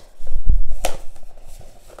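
Cardboard card box being handled on a desk while card dividers are worked out of it: a few low knocks in the first half second, a sharp click just before the middle, then lighter scraping and rustling.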